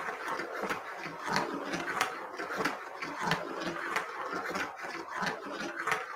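Steel marbles rolling around a 3D-printed plastic magnetic ring track, a continuous rattling with frequent sharp clicks.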